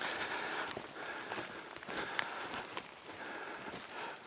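Footsteps of a hiker walking on a trail carpeted with spruce needles, with a few light taps among the steps.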